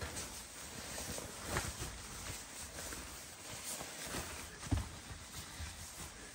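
Faint rustling and swishing of a thin nylon down puffy blanket being swung around the shoulders and wrapped on like a cape, with one brief thump near the end.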